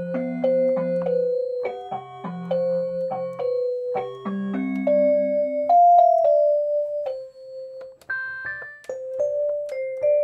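An 88-key home learning synthesizer played with both hands: a simple melody over low bass notes in one of its built-in voices, each note held evenly. Near the end the bass drops out and the melody moves higher.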